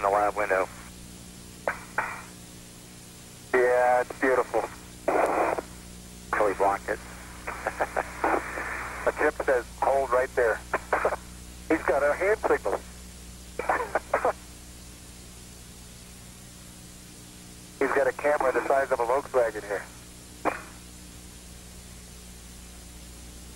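Space-to-ground radio voice loop: short bursts of voices through a narrow-band radio link, the words hard to make out, with pauses between them. A steady hum and hiss lie underneath.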